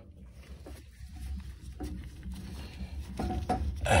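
Faint clicks, taps and scrapes of hands working a screw and the sheet-metal burner plate at the base of a gas boiler, over a low rumble.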